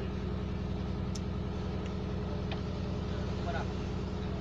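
An engine aboard a fishing boat running steadily, a constant low drone with an even pulse.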